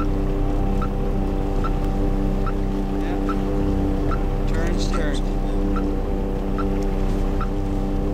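A small boat's engine idling, a steady hum of several held low tones. A short high blip repeats about every 0.8 seconds over it.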